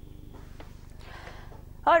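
Faint low buzzing hum with a fine, even pulse, heard in a gap between speakers; a woman starts to speak right at the end.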